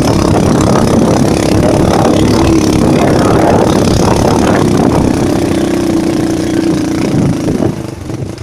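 Small motorcycle engine running loud and steady under load as it climbs a steep dirt track, then easing off and going quieter about seven and a half seconds in.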